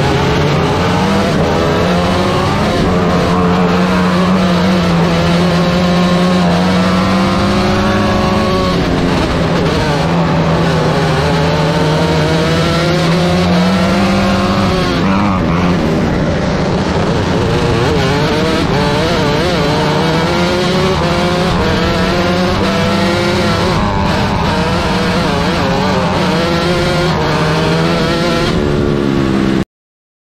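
Onboard sound of a 125cc micro sprint car engine running on a dirt oval, its pitch rising and falling with the throttle. The sound cuts off abruptly just before the end.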